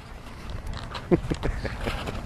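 Wind buffeting the microphone, with a few faint clicks and a short voice-like sound about a second in.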